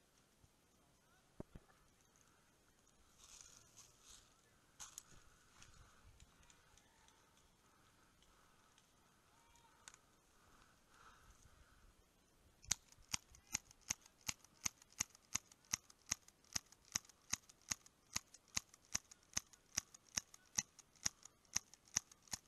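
Airsoft pistol firing a long run of sharp snapping shots, about three a second, beginning a little past halfway through. Before that there are only faint, scattered clicks.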